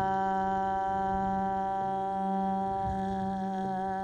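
Crystal singing bowls sounding a steady low drone, with a held sung or hummed tone over them that begins to waver in pitch near the end.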